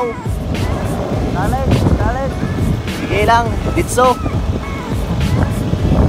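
Steady low rumble of wind and road noise from a moving ride, under background music, with a few brief bits of voice.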